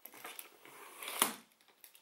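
Telescopic handle of a Louis Vuitton Pegase 55 Business rolling suitcase being pulled up, with a faint sliding rustle and then one sharp click about a second in as it locks at its longest setting.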